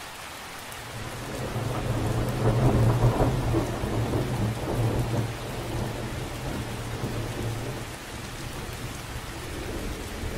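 Steady rain falling on water, with a long roll of thunder that builds from about a second in, is loudest around three seconds, and fades away over the next few seconds.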